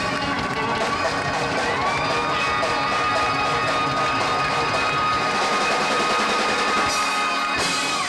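Live electric band led by a Telecaster-style electric guitar over drums. The guitar holds one long sustained note from about two seconds in, with a short crash near the end.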